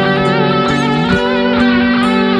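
Depressive black metal music: distorted electric guitars playing sustained chords under a wavering lead line, with bass. The low note steps up about halfway through.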